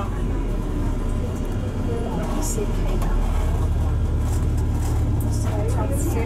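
Low engine rumble of a motor vehicle passing close by, swelling about halfway through and easing off near the end.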